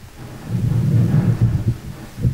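Low, muffled rumble on a handheld microphone, lasting about a second and a half, with no speech in it.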